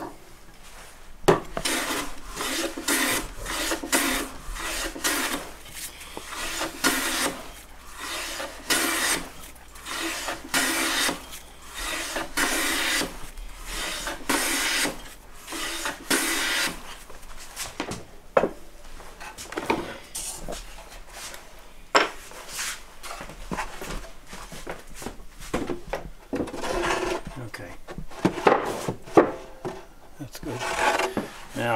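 Hand plane shaving wood, a run of swishing strokes about once a second as a board is trimmed to fit. Partway through the strokes stop for a few sharp knocks and clicks, then start again near the end.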